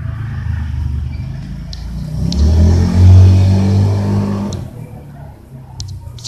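A motor vehicle's engine passes by, its low hum swelling to its loudest about three seconds in and then fading away.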